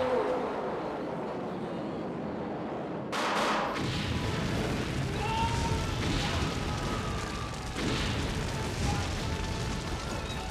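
A large movie-style explosion that goes off suddenly about three seconds in, followed by a long deep rumble that continues to the end, with music underneath.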